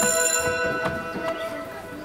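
A school bell ringing, a bright steady ringing tone that fades out within the first second, followed by faint voices.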